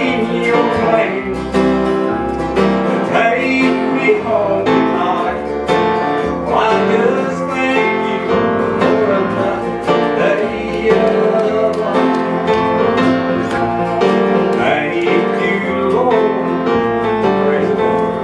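Live acoustic southern gospel music: several acoustic guitars and a mandolin playing together, with a man singing over them.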